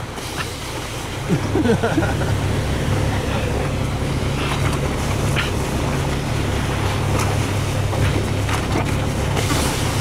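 Vehicle engine running steadily at low speed while towing, a continuous low hum, with a few brief children's voices over it.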